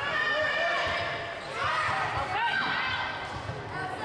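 Athletic shoes squeaking on a gym floor in short rising and falling chirps during a volleyball rally, with players' and spectators' voices in the gym.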